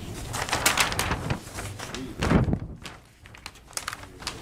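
Large paper plan sheets rustling as they are unfolded and handled, followed by a brief low sound a little after two seconds in and a few light clicks near the end.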